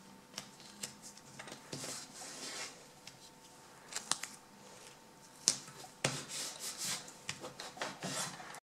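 Strips of tape being torn by hand and pressed down onto a ridged plastic sheet on a wooden desk. There are two rasping stretches of tearing and rubbing, and a few sharp clicks and taps in between.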